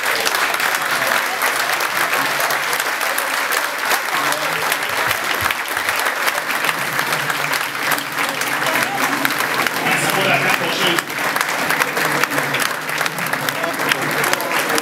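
A roomful of people applauding steadily, with voices mixed in.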